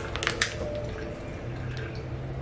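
Paper packet of muffin mix crinkling a few times as it is handled, near the start, then only a faint steady low hum.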